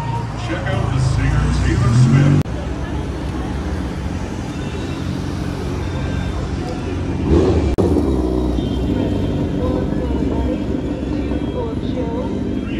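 A sport motorcycle's engine running on the street as the bike moves off slowly, over steady street noise. The sound cuts abruptly twice, and a rising engine note comes in the first seconds.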